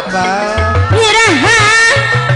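Sundanese gamelan accompaniment for a wayang golek play: low, repeated drum strokes under a sliding, heavily ornamented melody line that swoops down and back up in pitch.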